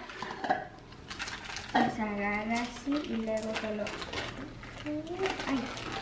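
Kitchen clatter: scattered light clinks and knocks of utensils, a can and a blender jar against each other and the counter while ingredients are added.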